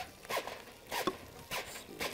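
A sheet of aluminium foil crinkling as it is handled and shaped by hand, in four or five short rustles.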